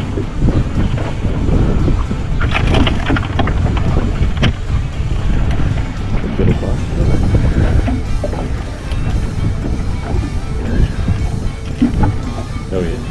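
Wind buffeting the microphone over background music. A few sharp clattering knocks come a few seconds in.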